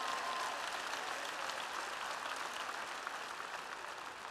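A large audience applauding, the clapping slowly dying down.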